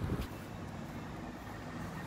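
Steady low rumble of outdoor traffic ambience, after a brief low thump at the very start.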